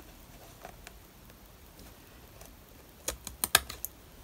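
Small scissors snipping, trimming a glued fabric edge on a book cover: a quick run of six or seven small, sharp snips near the end, after a nearly quiet start.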